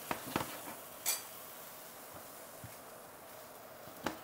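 Kitchen utensils clinking against a frying pan, a few light clicks in the first second or so, then a faint steady hiss from the hot pan of tofu cubes.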